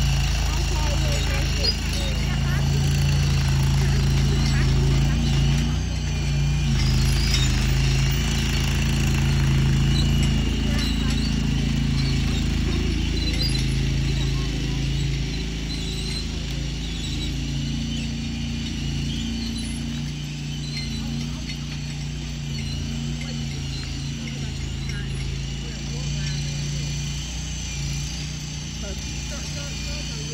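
Engine of a compact machine moving a portable building, running steadily with a low hum. It is louder for the first half and quieter from about fifteen seconds in.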